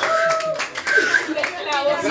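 A few hand claps among several overlapping voices of a group in a room.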